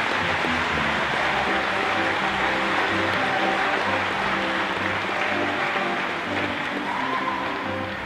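Mixed school choir singing with piano accompaniment, many voices blending over held piano and vocal notes.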